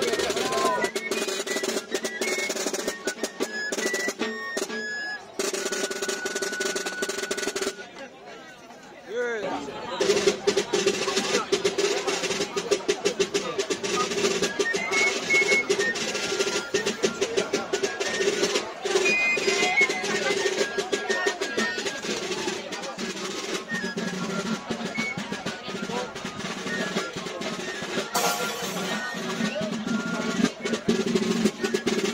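Basque txistu pipes playing a melody in unison, accompanied by tamboril drums struck with sticks. The music dips briefly about eight seconds in, then carries on.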